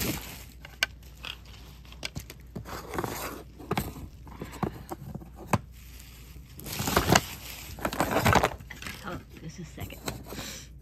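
Handling noise as things are rummaged and moved: rustling of a bag or cloth with scattered clicks and light knocks of wooden pieces and beads. A denser, louder spell of rustling comes about seven seconds in and lasts over a second.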